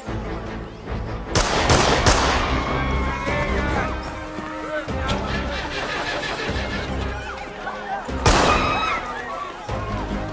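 Film soundtrack mixing gunshots and people shouting under dramatic score music. The loudest, sharpest shots come about a second and a half in, again at two seconds, and near the end, with smaller cracks in between.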